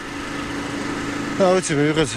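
An engine running steadily at the roadside, a constant hum with one held tone, with a man's voice starting again about one and a half seconds in.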